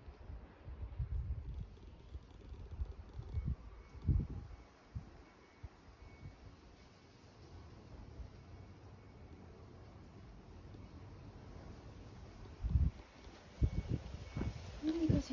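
Irregular low rumbling and thumps of a handheld phone being moved about, with the loudest bumps about four seconds in and again near the end.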